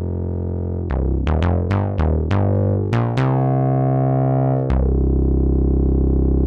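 Synthesizer bass line: a quick run of short notes, each starting bright and darkening fast as the filter closes, then two longer held notes.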